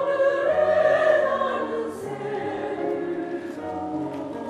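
Mixed church choir of men and women singing a Korean sacred anthem in sustained full chords. The phrase swells to its loudest about a second in, then eases off.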